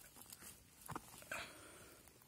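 Near silence, with a couple of faint brief rustles about a second in.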